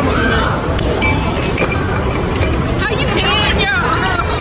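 Air hockey puck and mallets clicking against the table and its rails, over the constant din of a busy arcade with voices in the background.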